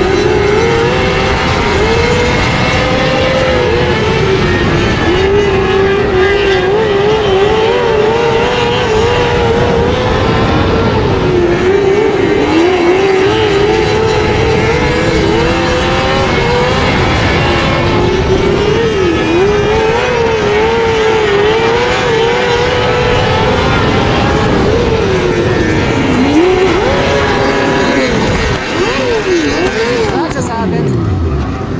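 Dirt-track race car engine running at high revs for a long stretch, its pitch wavering up and down as the throttle is worked. Near the end the revs fall away in a few quick drops.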